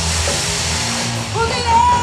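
Live pop band music heard from the crowd, with a hiss from stage CO2 jets over it for about the first second; a held sung note comes in near the end.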